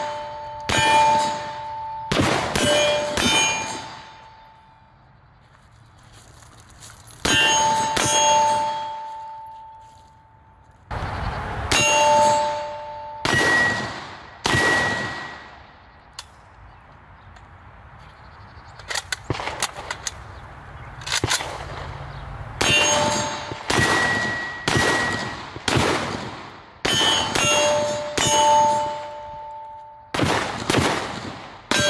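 Pioneer Arms Hellpup 7.62x39 AK pistol fired in strings of single semi-automatic shots, each hit answered by steel targets ringing in two or three different pitches that fade over about a second. The shots come in clusters, with pauses of a few seconds between strings.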